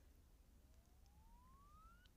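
Near silence, with a faint tone gliding steadily upward in pitch from about half a second in.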